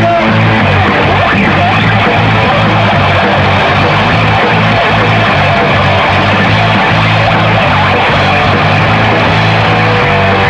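Live rock band playing loud, an instrumental stretch with electric guitar over bass and drums and no vocals.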